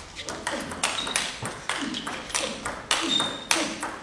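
Table tennis rally: the ball clicking off the rubber bats and the table in a quick, uneven rhythm, with short squeaks of players' shoes on the court floor.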